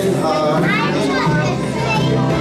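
A small live band of guitars playing a song, with high voices, some like children's, heard over the music.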